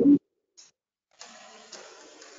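A clipped fragment of a word at the very start, then the call goes quiet. About a second in, a faint steady hiss of background noise comes in from an open microphone.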